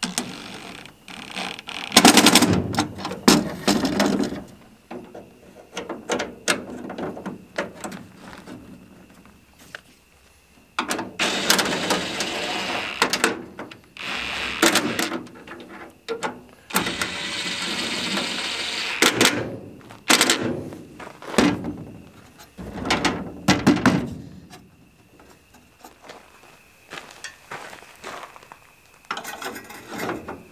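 Ryobi cordless driver running stainless steel machine screws through an aluminium plate into lock nuts, in several bursts of one to three seconds with pauses between: one about two seconds in, a longer run in the middle with a steady two-second stretch, and shorter bursts after.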